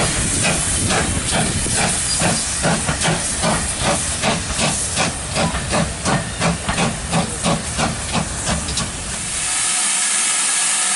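Two steam locomotives double-heading a train, one of them GWR King class 4-6-0 No. 6023 King Edward II, working away under steam: exhaust beats about three a second over a steam hiss. Just before the end it changes to a steady hiss of steam with no beats.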